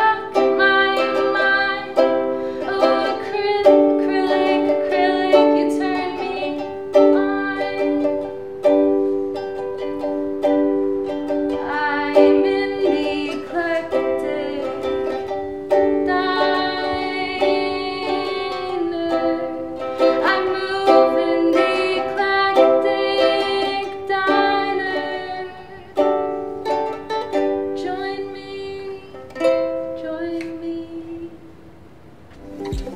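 Ukulele strummed in a steady chord pattern, the chords changing every few seconds.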